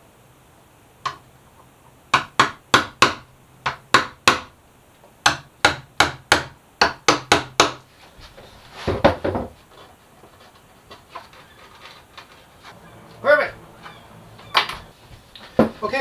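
A small hammer tapping a chisel to score the outline of a hinge recess in a hardwood cabinet frame. The sharp taps come in quick runs of about three or four a second through the first half, with one more tap later on.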